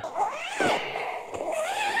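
Zip on the inner door of a Terra Nova Laser Compact AS tent being drawn shut around the door's curved edge: one long sliding zip whose pitch wavers up and down as the pull speeds and slows.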